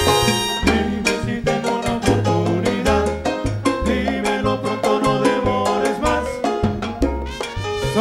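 Live salsa band playing an instrumental passage: brass riffs over a bass line and busy percussion from timbales and congas.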